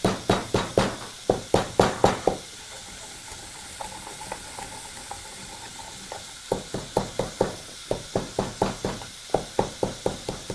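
Wooden pestle pounding whole spices (fennel seeds, cinnamon sticks, cloves) in a wooden mortar, with dull knocks about four a second. The pounding stops for about four seconds in the middle, then starts again.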